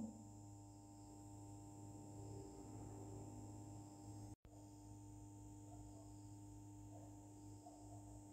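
Near silence: faint steady room-tone hum, with a brief complete dropout about four seconds in.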